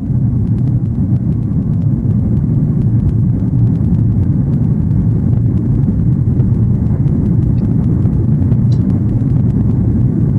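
Steady low rumble of an airliner cabin in flight: engine and airflow noise heard from inside the passenger cabin.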